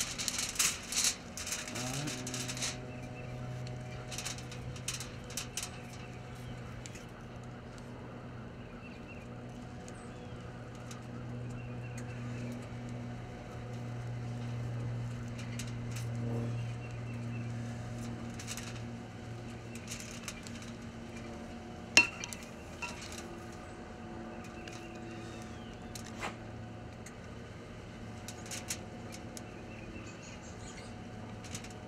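Clinks and rustles of injecting raw chicken legs with a handheld stainless meat injector: the needle and barrel tapping against a glass measuring cup and foil crinkling, busiest in the first few seconds, with one sharp click about two-thirds through. A steady low hum runs underneath.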